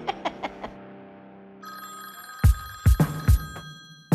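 Landline telephone ringing, coming in about one and a half seconds in. It sounds over dramatic music that opens with a run of ticks and then lands three heavy low drum hits.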